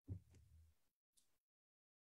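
Near silence between spoken passages, with one faint, brief low thump right at the start.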